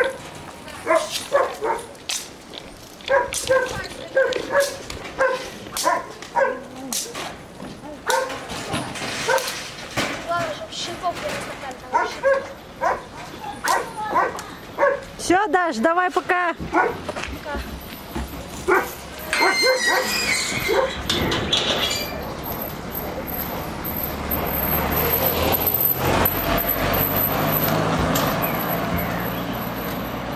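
Goats bleating in short repeated calls, about one a second, with one longer wavering bleat about halfway through, as the herd is driven in through a gate. In the last third a car engine running comes up and grows louder.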